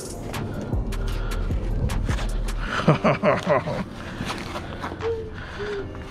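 Thin white foam packing wrap rustling and crinkling as it is pulled off a carbon-fiber side skirt, with many small crackles throughout.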